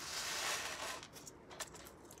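Plastic wrapping rustling as it is handled for about a second, then a few small clicks and taps.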